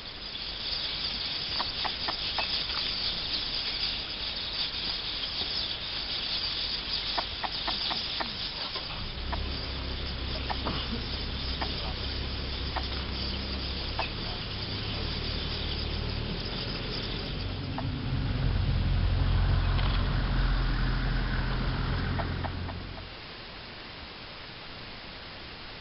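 Bird calls like clucking fowl over a high insect buzz, with an engine running steadily from a little before halfway and louder near the end. The sound cuts off shortly before the end.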